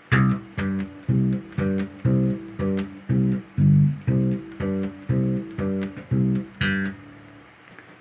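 Electric bass guitar playing a root-and-fifth line in C: short, detached notes about two a second, the root C alternating with the G a fifth above, and once with the G a fourth below to close a four-bar phrase. The playing stops about seven seconds in.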